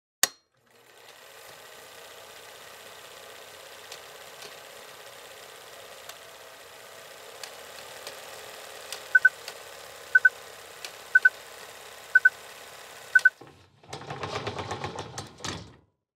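Film-projector running sound under an old-style film countdown leader: a steady whirring rattle, with a short double beep about once a second for five counts near the end. A sharp click comes just before the rattle starts, and a louder rough burst of noise comes just before it stops.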